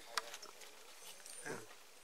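Brief wordless sounds from a man's voice between phrases: a small click near the start and a short murmured 'mm' about a second and a half in.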